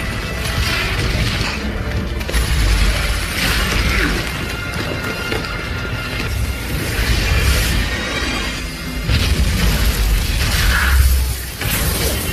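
Action-film soundtrack: music over a dense bed of sound effects, with heavy low rumbling and booms that swell and fall several times.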